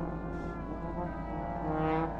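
Brass ensemble of trumpets and trombones playing long held chords, several sustained notes overlapping, swelling louder near the end.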